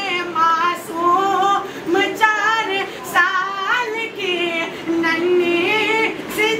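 A solo voice singing a devotional manqabat in long, drawn-out notes that glide and waver, with no clear words.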